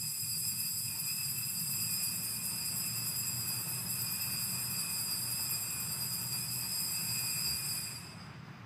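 Altar bells rung without a break during the elevation of the chalice at the consecration, a steady high ringing that stops abruptly near the end.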